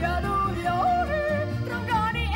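Woman yodeling a Swiss folk yodel, her voice jumping sharply in pitch between registers. Under it runs a steady low instrumental accompaniment.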